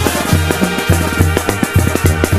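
Mexican banda music in an instrumental passage without singing: a steady beat over a repeating bass line.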